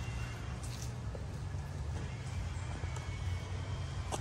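Wind buffeting the microphone outdoors: a steady low rumble under a faint even hiss.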